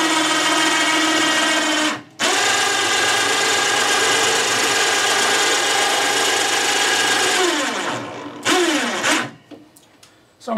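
Cordless drill motor running at a steady speed, cutting out briefly about two seconds in. Near the end it slows with a falling whine and gives two short bursts before stopping.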